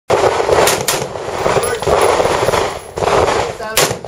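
Gunshots from a handgun and an AR-style rifle: two sharp shots close together about half a second in and another just before the end, over a loud rushing noise.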